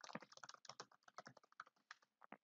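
Faint computer keyboard typing: a quick, uneven run of many keystrokes.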